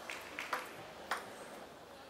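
A table tennis ball clicking off the bats and the table in a rally: about four sharp clicks in the first second or so, the last two the loudest, over a faint murmur from the hall.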